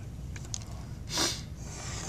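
A person's short breath out through the nose about a second in, over a faint steady low hum, with a small click shortly before it.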